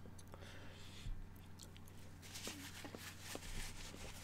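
Faint mouth sounds of a man chewing a small pickled quail egg, with a few soft scattered clicks.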